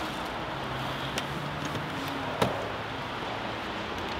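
Steady outdoor background noise with a faint low hum, broken by one sharp knock about two and a half seconds in.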